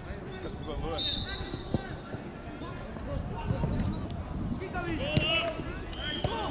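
Players and onlookers calling out during an outdoor football match, with a sharp thud of the ball being kicked a little under two seconds in.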